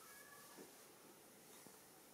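Near silence: quiet room tone, with a faint, brief high tone in the first half-second.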